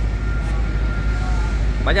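Steady low rumble of road traffic on a city street, with a loaded crane truck driving by.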